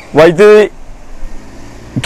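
A man speaking a short phrase in Malayalam into a microphone, then a pause about a second long with a faint low hum behind it before he speaks again.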